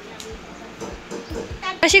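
A young child's high-pitched voice calling out near the end, its pitch rising and falling, over a faint background.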